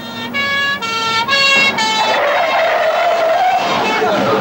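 Two-tone siren alternating between a high and a low note for about two seconds, then tyres screeching as a car skids to a stop.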